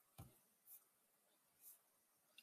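Near silence: room tone, with three faint short clicks.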